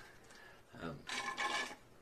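A large foam drink cup with a straw being set back down on a desk, giving a short scraping noise of under a second in the second half.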